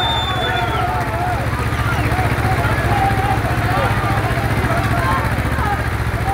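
Tractor diesel engines of an Ursus C-335 and an IMT 533 running hard against each other in a tug-of-war pull: a loud, steady, rapid low firing beat, with a crowd shouting and calling over it. A high whistle tone stops about a second in.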